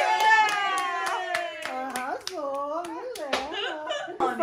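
A small group clapping along at about three claps a second, with excited voices calling out over it.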